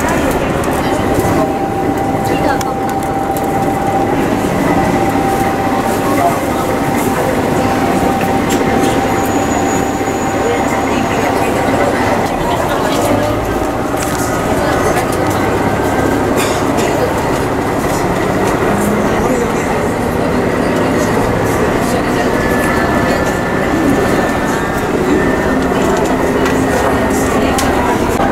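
A diesel train running along the line, heard from inside a passenger car, with a continuous rumble of running noise and passengers chattering.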